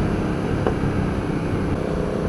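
Hyosung GT650R's V-twin engine, fitted with a Danmoto aftermarket exhaust, running at a steady cruise, heard through a rush of riding wind on the camera microphone.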